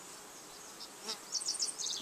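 Honey bees buzzing faintly around an open hive. In the second half come a run of short, quick high chirps.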